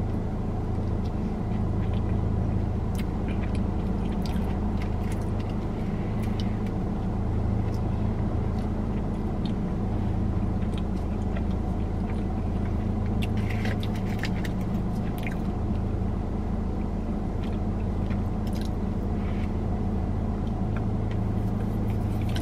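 Steady low drone of a car's engine running at idle, heard from inside the cabin, with faint chewing and small clicks of utensils or food now and then.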